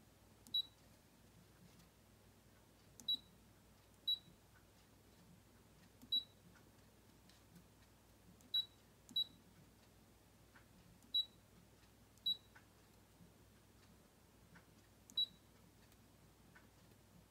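Brother ScanNCut digital cutter's touchscreen beeping at each tap as a PIN is keyed in: nine short, high beeps at uneven intervals.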